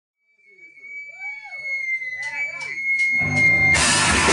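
A live garage punk band starting a song: a steady high amplifier feedback whine over shouting voices, then four evenly spaced clicks. Near the end the full band comes in loudly with drums and electric guitars.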